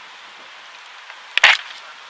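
Printed sheets of paper being flipped over right next to a clip-on microphone: one short, sharp crackle about a second and a half in, over a faint steady hiss.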